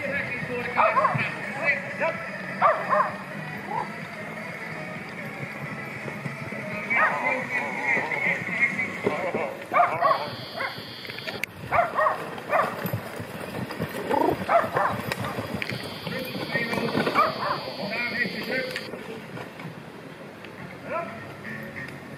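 Short, sharp shouts and calls from the crew of a four-horse carriage team and from spectators as the team races past, over the general noise of an outdoor crowd.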